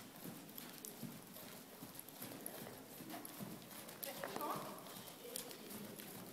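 Hoofbeats of a ridden horse on the soft sand footing of an indoor arena, a muffled, rhythmic thudding. A voice is heard briefly about four seconds in.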